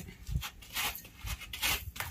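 Rubber sandals shuffling and scraping on gritty, dusty ground littered with broken tile pieces, in a few short, uneven scuffs.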